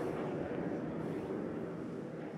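Jet aircraft flying overhead: a steady rush of engine noise.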